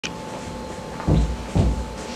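Two dull thumps about half a second apart, over a faint steady hum.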